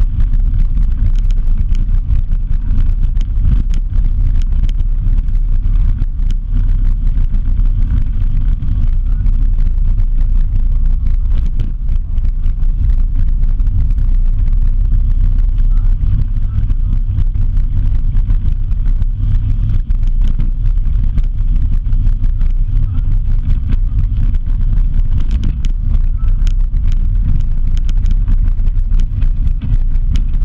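Steady low rumble of wind buffeting an action camera's microphone while riding down a dirt road, mixed with vehicle travel noise and scattered small ticks and rattles from the rough surface.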